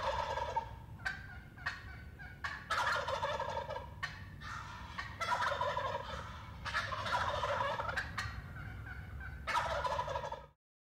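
Wild turkey gobbling again and again: about five longer rattling gobbles a second or two apart, with shorter calls between, over a faint low rumble.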